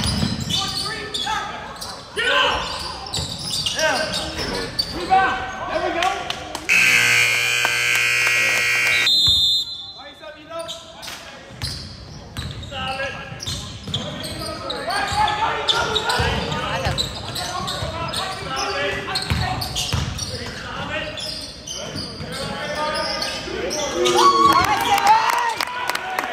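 A basketball dribbled on a hardwood gym floor, with indistinct voices of players and spectators echoing in the large hall. About seven seconds in, a steady electronic horn, most likely the gym's scoreboard horn, sounds for roughly three seconds and cuts off sharply.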